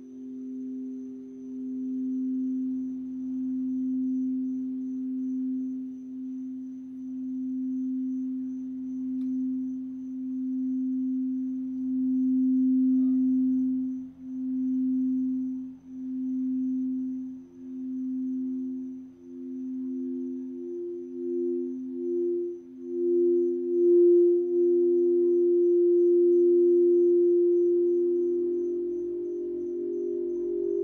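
Crystal singing bowls ringing: one low, sustained tone with a slow pulsing beat, joined about twenty seconds in by a second, higher bowl that swells and becomes the loudest sound near the end.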